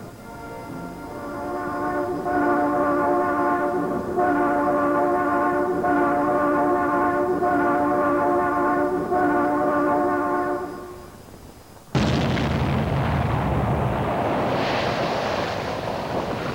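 A steady multi-note warning horn sounds for about ten seconds, then fades out. About a second later an explosive rock blast goes off suddenly and loudly, followed by continuing rumble.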